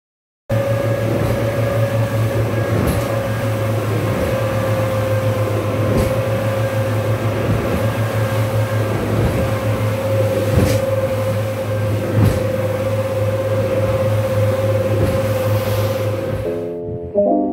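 Speedboat engines droning steadily, heard from inside the cabin, with a steady hum and whine. About four brief thumps come as the hull slams on the waves of a bumpy crossing.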